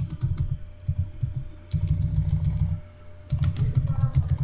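Typing on a computer keyboard: a quick run of keystrokes in short bursts with brief pauses between them, as a word is typed in.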